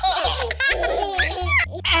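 Cartoon baby voices giggling and laughing, over children's background music with a steady bass beat.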